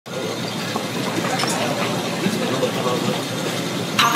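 Indistinct voices chattering over a steady background of noise, as a recorded intro to the track.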